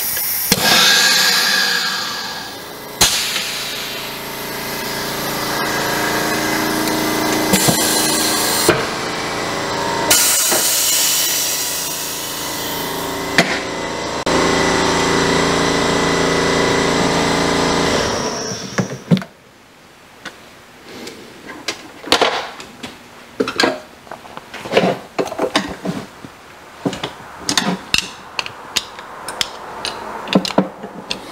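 Morgan G-100T pneumatic injection press making a shot: a loud steady hiss of air with a hum that shifts a few times and cuts off about 18 seconds in. After it come light metal clicks and knocks as the aluminum mold is handled and pried open.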